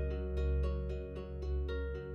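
Soft instrumental background music of plucked notes, about four a second, each fading away, over a steady low sustained tone.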